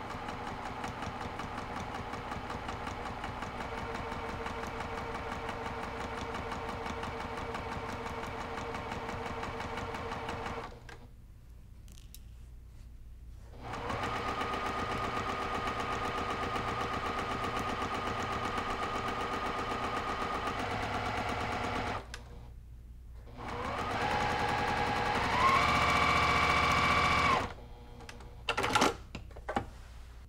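Electric sewing machine stitching a straight seam through quilting fabric and batting. It runs steadily in three stretches with short pauses between them. In the last stretch it speeds up, rising in pitch and getting louder, before stopping near the end.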